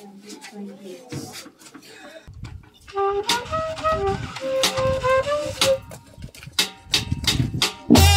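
Faint voices for about three seconds, then a band starts playing a slow melody led by a woodwind, with a drum beating underneath.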